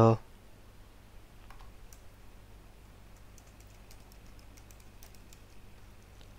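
Faint typing on a computer keyboard: scattered light key clicks with pauses between them.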